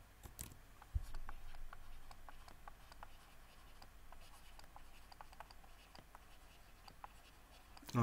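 Faint, irregular small clicks and light scratching from hands working at a desk, with a soft thump about a second in.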